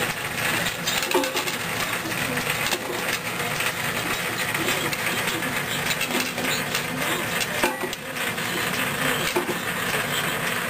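Steady running motor noise from shop machinery, with a few light knocks.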